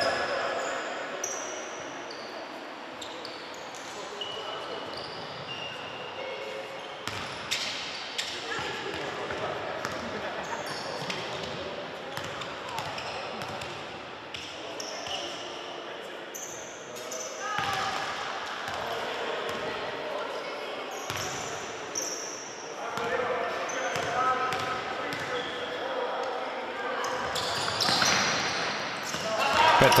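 Basketball game noise in an echoing sports hall: a ball bouncing on the hardwood floor, sneakers squeaking in short, high chirps, and players, coaches and spectators calling out. The noise grows busier near the end as play restarts.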